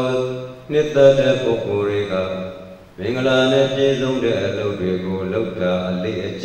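A Buddhist monk chanting in a steady, intoned male voice. He holds each note in long phrases, with a brief break about three seconds in.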